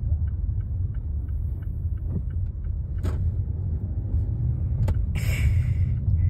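Car road and engine noise heard inside the cabin of a moving car: a steady low rumble, with a couple of sharp clicks and a brief rustle near the end.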